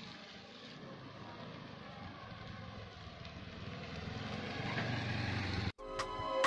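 Outdoor motor-vehicle noise that grows steadily louder, with a low rumble building near the end, then cuts off abruptly.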